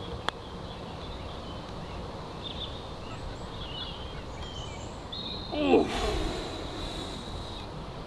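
A single crisp click of a golf club striking the ball on a short chip shot, just after the start. Then quiet outdoor background with birds chirping, and a brief voice a little past halfway.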